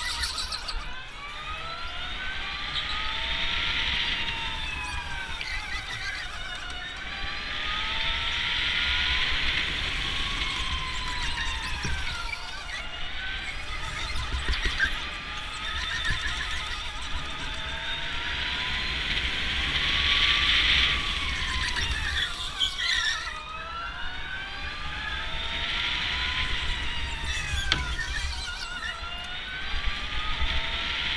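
Electric go-karts lapping an indoor track: several overlapping motor whines that climb in pitch as the karts accelerate and sink as they slow for corners, swelling and fading in waves every few seconds over a low rumble of the kart's running.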